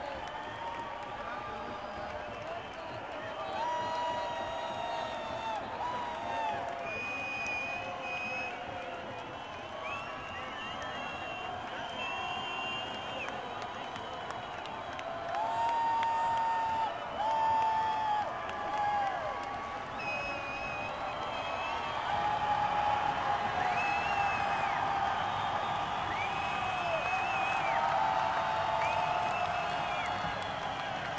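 Concert crowd between songs: cheering and shouting, with many long held whoops and whistles over a steady crowd noise that grows louder in the second half.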